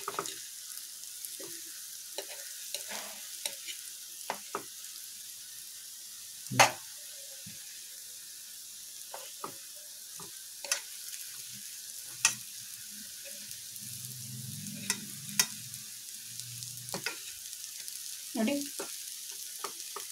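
Raw banana slices sizzling in shallow oil in a nonstick pan, with a dozen or so clicks and taps of a steel fork against the pan as the slices are turned; the sharpest tap comes about six and a half seconds in.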